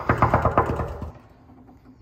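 Rapid, continuous knuckle knocking on a room door, a fast drumroll of knocks that stops about a second in.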